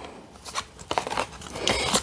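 Tarot cards being handled: a card slid and lifted over the spread, with light clicks and soft scrapes of cardstock and a louder rustle near the end.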